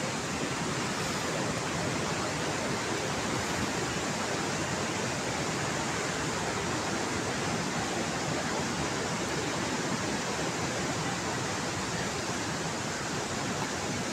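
Steady, even rushing noise with no separate events.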